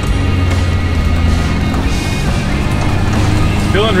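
Background music over the steady engine and cabin rumble of a Nissan GQ Patrol driving off-road on a rough dirt track.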